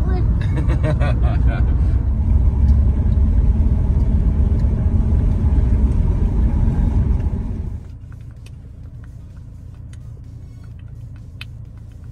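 Road and engine noise heard inside a moving vehicle's cabin: a loud, steady low rumble that drops sharply about eight seconds in to a quieter steady hum with faint scattered ticks.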